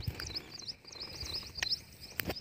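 Small birds chirping in quick runs of short, high, repeated notes, several a second, with a few sharp clicks.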